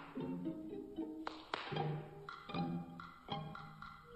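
Symphony orchestra in a 1950s comic opera score, playing short, sharply accented chords with plucked strings, several sudden hits spread through the passage.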